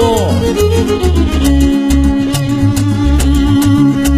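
String-band music from a trio: a violin plays with sliding notes near the start, then holds a long note, over strummed guitars and a steady pulsing bass.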